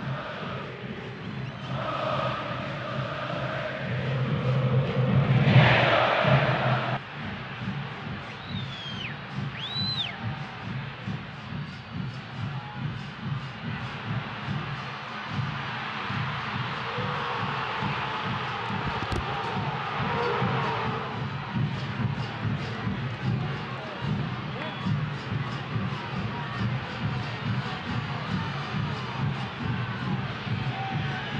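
Football stadium crowd noise, with a loud swell of the crowd about four to seven seconds in.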